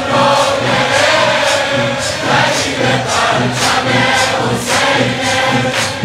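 A congregation of mourners singing a noheh refrain together, with chest-beating (sineh-zani) keeping a steady beat about once a second.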